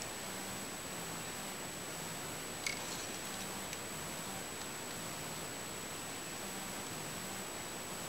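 Quiet steady hiss with a faint high whine, broken by one light click of metal pliers against the whistle unit's plastic housing about a third of the way in.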